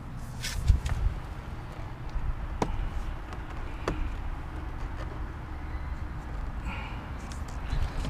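Plastic retaining clips of a car's front door trim panel popping as the panel is pulled off the door: a few sharp, separate clicks over a low rumble of handling noise.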